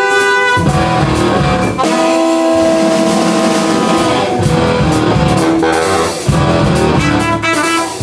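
Live jazz octet playing: saxophones and trumpet over drums, double bass and electric guitar. A long held horn note gives way about half a second in as the full band comes in with bass and cymbals, and the horns go on holding long notes over the rhythm section.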